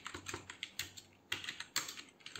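Typing on a computer keyboard: a quick run of separate key clicks with a short pause in the middle, as a filename is typed.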